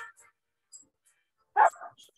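A dog barks about a second and a half in, a short sharp bark followed at once by a smaller one, heard over a video call.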